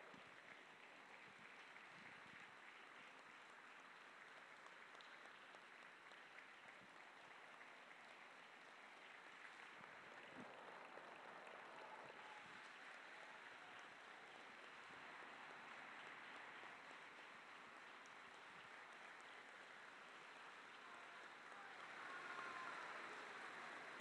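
Faint crowd applause: a steady patter of many hands clapping, swelling slightly near the end.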